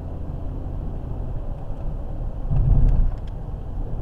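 Car driving, heard from inside the cabin: a steady low rumble of engine and road noise that swells louder for about half a second past the middle, with a few faint clicks.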